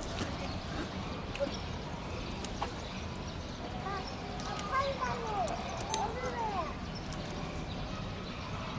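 Giant panda crunching bamboo stalks, a series of short, irregular cracking clicks as it chews, with people's voices in the background that rise briefly in the middle.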